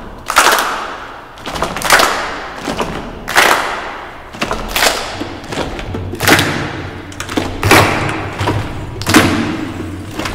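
Children's choir doing body percussion: hand claps and thumps in a slow repeating pattern, a strong beat about every second and a half with lighter hits between, echoing in the large church hall.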